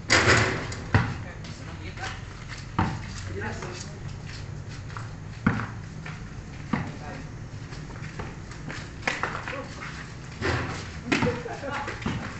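Basketball game on an outdoor concrete court: a loud hit at the start as a shot meets the hoop, then a few separate thuds of the ball bouncing on the concrete. Players shout and talk, more of it near the end.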